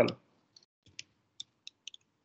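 Computer keyboard typing: about six separate keystrokes at an uneven pace.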